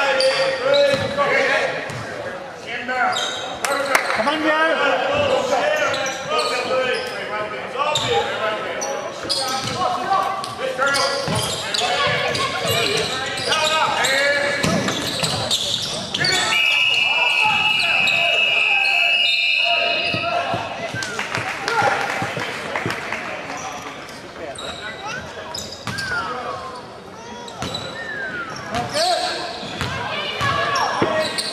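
Live basketball game in a reverberant gym: a ball bouncing on the hardwood floor, sneakers squeaking, and indistinct shouting from players and spectators. A high steady tone sounds for about three seconds just past the middle.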